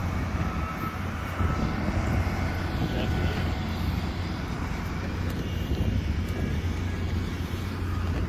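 Steady low engine rumble of construction machinery running on the site.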